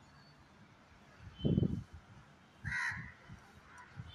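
A house crow gives one short, harsh caw about three seconds in. A dull low thump comes just before, around a second and a half in, with a few softer knocks after.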